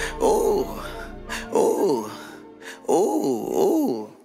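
Outro of a hip-hop track: a wailing "ouuu" vocal hook, sung about four times with bending, wavering pitch over the beat. The bass drops out about one and a half seconds in.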